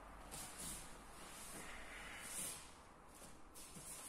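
Faint rustling of cotton training uniforms and bare feet shuffling on foam mats as two people get up from a pin and step apart, with a few soft hissing swishes over quiet room tone.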